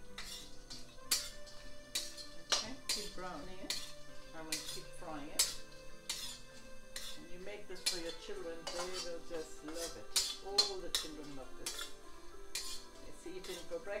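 Metal spatula scraping and clinking against a stainless steel wok as nuts are stirred and roasted in ghee, with repeated irregular knocks and scrapes.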